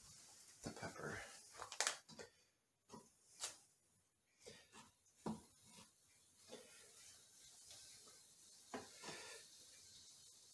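Faint, irregular knocks and handling noises: a kitchen knife cutting through an onion on a plastic cutting board.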